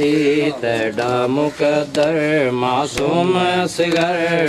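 Men's voices chanting a noha, a Shia lament for Imam Husain, in long, wavering, drawn-out notes with short breaks between phrases.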